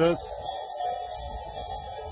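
Small bells on a flock of sheep jingling as the animals walk across a pasture.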